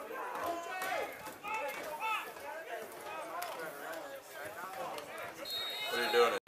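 Spectators' voices: several people talking and calling out over each other, with no clear words, and a short high steady tone near the end.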